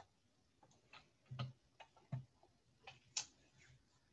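Near silence broken by faint, irregular clicks at a computer keyboard and mouse. There are about half a dozen, two of them with a soft low thud, and the sharpest comes about three seconds in.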